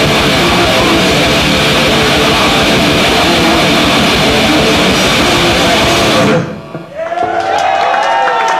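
Death metal band playing live at full volume: distorted guitars, rapid drums and growled vocals in a dense wall of sound. The song cuts off abruptly about six seconds in. After it come ringing, bending guitar tones and shouts.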